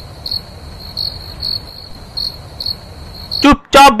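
Crickets chirping over a low steady hiss, in short chirps about three a second; the chirping stops just before a voice cuts in near the end.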